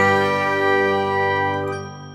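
A held musical chord with bell-like ringing tones, the last note of a short jingle. It fades out near the end.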